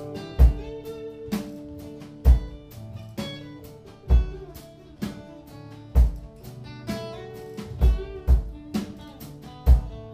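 Live instrumental passage of a country-gospel song: an acoustic guitar is strummed in sustained chords over a drum kit. A kick drum lands on a slow beat about every two seconds, with lighter drum hits between.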